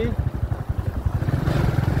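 Motorcycle engine running steadily while riding, a dense run of low firing pulses. A voice starts again near the end.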